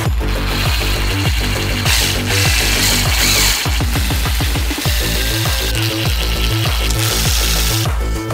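Cordless drill-driver running in short bursts as it drives small screws into a 3D-printed plastic part, over electronic background music with a steady beat.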